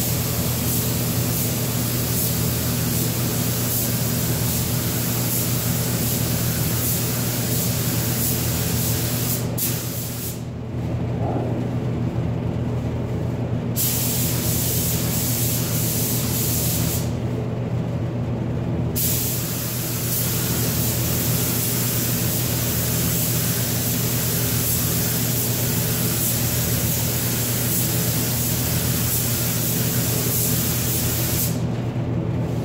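Air-powered paint spray gun hissing as basecoat is sprayed onto car body panels. The hiss stops twice as the trigger is let off: for about three seconds starting ten seconds in, and for about two seconds around seventeen seconds. A steady low hum runs underneath.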